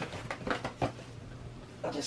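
A hand digging into a paper sack of hardwood sawdust, with the paper crinkling and the sawdust shifting in a few short rustles.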